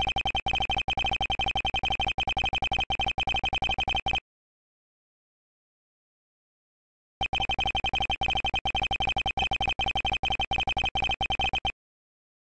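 Dialogue text-scroll blips from a visual-novel style text box: a rapid stream of short, identical electronic beeps, one per typed character, in two runs of about four and a half seconds each with a silent gap of about three seconds between them.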